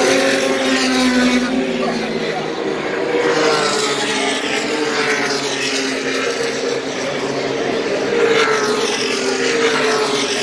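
Race car engines running past on the track, a continuous drone with passing cars swelling and falling in pitch several times.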